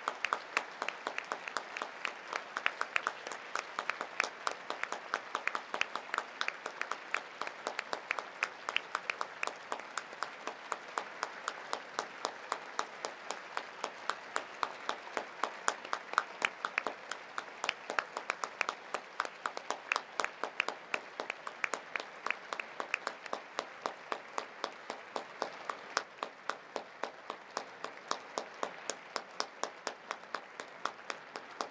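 Audience applauding: a dense patter of many hands, with one pair of hands near the microphone clapping loudly about four times a second. The applause eases slightly near the end.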